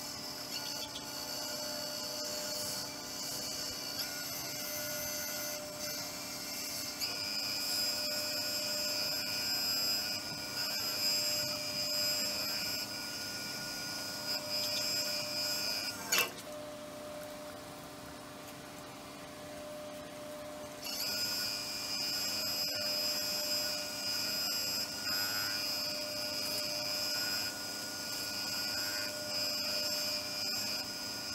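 Wood lathe running with a resin-and-wood bowl spinning while a cloth is held against its inside applying finish, giving a high, steady rubbing sound over the motor's whine. About sixteen seconds in there is a sharp click and the rubbing stops for about five seconds while the lathe runs on, then it resumes.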